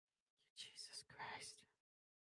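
A woman's faint whisper, lasting about a second, in otherwise near silence.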